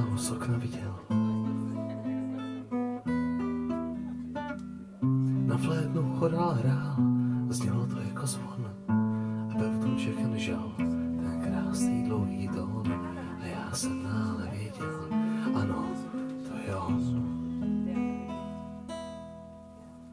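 Acoustic guitar strummed, its chords ringing and changing every second or two. A man's voice sings along in places. The playing dies down near the end.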